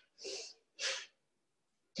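Bhastrika pranayama (bellows breath): two sharp, forceful breaths about half a second apart, the last of a round, after which the breathing stops.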